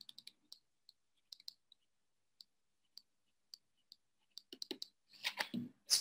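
Faint, sparse clicks of a stylus tip tapping on a tablet screen while handwriting, a few ticks a second with a short flurry near the end.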